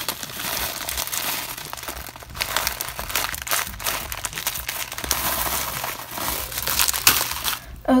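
Thin plastic bag crinkling and rustling as it is handled, with many irregular crackles.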